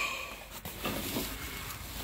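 Faint rustling and scraping of an old cardboard box and the paper inside it being handled and opened.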